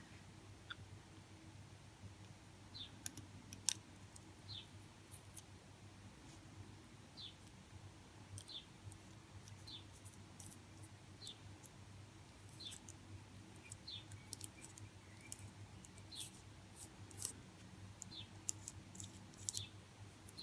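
Faint clicks and small crinkles of fingers handling and pressing a piece of thin broken-glass nail foil onto a nail, over a low steady hum. Faint short high chirps recur every second or so.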